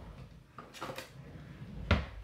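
A few faint clicks and light taps of trading cards and plastic holders being handled on a tabletop, with one sharper knock near the end.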